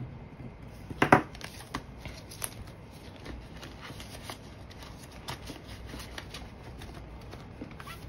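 Paper banknotes and a clear plastic pouch in a ring binder being handled: scattered crinkles and small clicks, the loudest about a second in.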